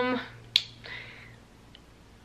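The end of a drawn-out "um", then a single sharp click about half a second in, followed by quiet room tone with a faint steady low hum.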